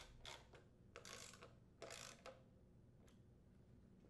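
Faint clicking of a ratchet socket wrench tightening the mounting screws of a new small-engine fuel pump, in a few short runs of clicks that die away after about two seconds.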